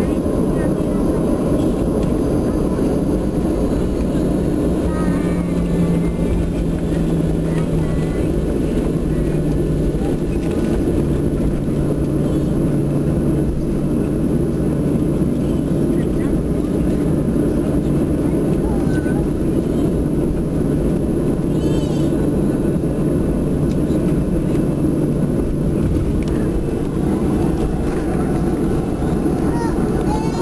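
Steady rumble of a jet airliner taxiing, heard inside the passenger cabin: engine and rolling noise with a low hum that drops in pitch during the first ten seconds and then holds.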